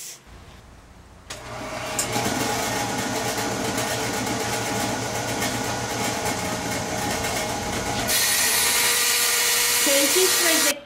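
Table saw fitted with a blade made for cutting HardieBacker cement board, starting up about a second in and running steadily with a motor whine. The sound turns harsher and hissier about eight seconds in, as the blade cuts the cement board.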